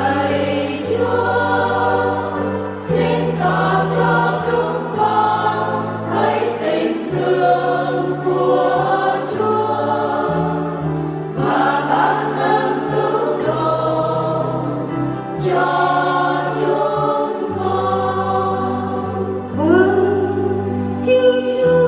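Church choir singing a Vietnamese responsorial psalm to instrumental accompaniment, with sustained bass notes moving under the voices.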